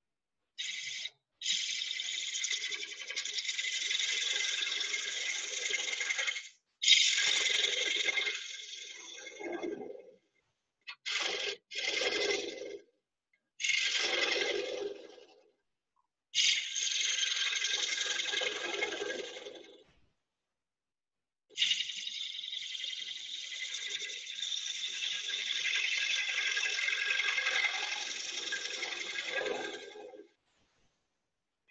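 Bowl gouge cutting the rim of a wooden bowl spinning on a lathe: a steady, high shaving sound in a run of separate passes, the longest about eight seconds, with dead silence between them.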